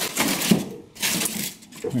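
A polystyrene foam block being handled against pine benchwork framing: short knocks and scraping as it is moved and set in place.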